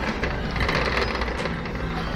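A steady, fast rattling clatter over the noise of a busy room.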